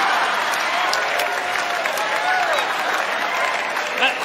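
Large theatre audience applauding and cheering after a punchline, the applause slowly dying down.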